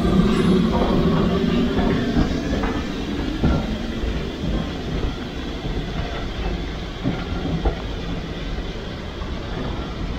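Steam train of a GWR Hall-class locomotive and coaches pulling out, rumbling steadily as the carriages roll past with a few wheel clicks over the rail joints. The sound slowly fades as the locomotive draws away.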